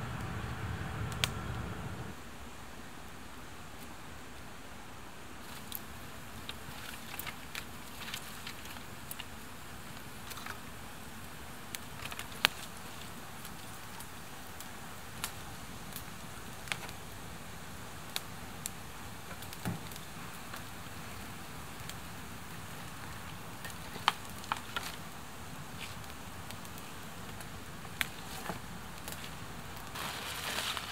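Freshly lit campfire of sticks and dry reeds burning, with sparse sharp crackles and pops over a steady low hiss. A louder rushing noise fills the first two seconds.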